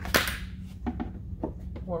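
A sharp clack as the mud flap's backing plate is set in against the mounting bracket and plastic fender liner, followed by a few lighter clicks as it is shifted into position.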